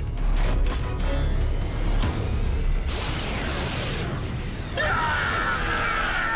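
Action background music with cartoon battle sound effects over a steady low rumble: falling-pitch sweeps about halfway through, then an energy-beam blast setting in suddenly about five seconds in.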